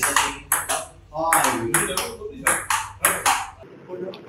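Table tennis rally: a plastic ball clicking sharply off paddles and the table in quick succession, about two or three hits a second, over a low room hum. The rally sound stops abruptly near the end.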